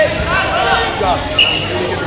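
Voices calling out over the chatter of a crowd of onlookers. About one and a half seconds in there is a sharp click, followed by a short, steady high tone.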